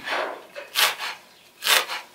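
Kitchen knife chopping a pile of fresh herbs on a wooden cutting board: three strokes, just under a second apart, the blade cutting through the leaves onto the wood.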